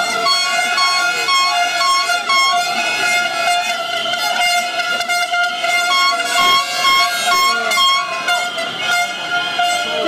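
Horns sounding together: one long, steady held note runs under runs of short repeated toots, about three a second, in the first couple of seconds and again from about six seconds in.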